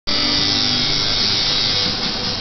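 Tattoo machine buzzing steadily.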